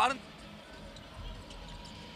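Faint background of a basketball game in a gym: a basketball bouncing on the hardwood court, with low thuds about halfway through.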